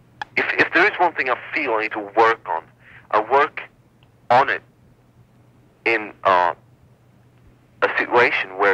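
Speech: a person talking over a taped telephone line, in phrases with short pauses, with a steady low hum underneath.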